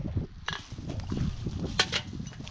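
Footsteps crunching through dry leaf litter, with a plastic trash bag rustling and two sharp crackles, one about half a second in and one near the end.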